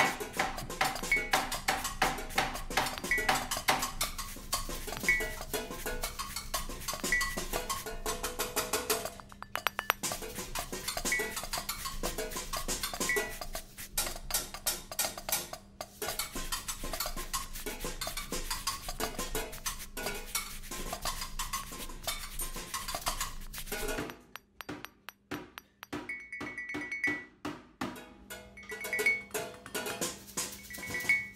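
Percussion quartet playing kitchen objects as instruments: metal pans, lids, a hanging steel pot and glasses struck with spoons and sticks in quick interlocking rhythms, with a high ringing ping about every two seconds. Near the end it thins to scattered, quieter hits.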